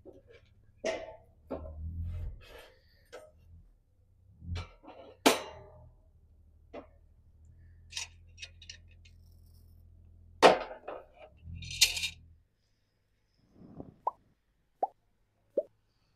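A series of sharp knocks and clanks of wood and metal as split logs are fed into a small steel fire basket and the cast-iron grate and Dutch oven are set over it, with a low rumble under them. Three short high pings follow near the end.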